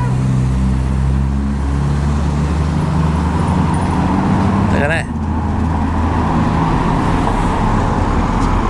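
Classic cars driving slowly past, their engines running steadily with a low note that shifts about five seconds in as the next car comes by.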